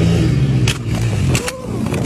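A vehicle engine running at a steady low pitch, broken by two sharp knocks, the second at about the moment the engine sound stops.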